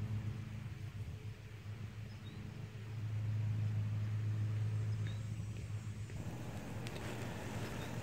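Steady low mechanical hum, a little louder for a few seconds in the middle.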